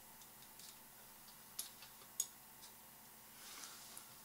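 Two short, faint clicks about a second and a half and two seconds in, with a few fainter ticks, over near-silent room tone: mouse clicks while operating CAD software.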